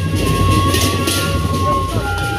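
Gendang beleq ensemble playing: big barrel drums beating under a clashing, rattling wash of ceng-ceng hand cymbals, with a single high tone held for over a second in the middle.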